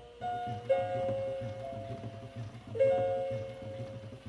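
Battery-operated animated Peter Rabbit soft toy playing a short chiming tune through its small speaker: a few notes, each dying away, the last one near the end. Under it runs the steady, pulsing hum of the toy's animating motor.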